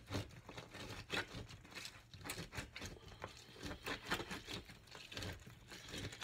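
Half a lemon being pressed and twisted by hand on an orange plastic reamer juicer set over a glass jar. The sound is a run of irregular short scrapes and clicks as the rind grinds against the ridged cone.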